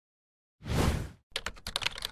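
Logo-animation sound effect: a half-second rush of noise, then a rapid run of sharp clicks, about ten a second, like typing.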